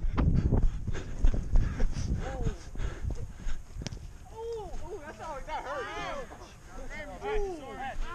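Rumbling and thumps on a body-worn action-camera microphone as a player runs across grass. From about four seconds in, many overlapping distant calls rise and fall in pitch.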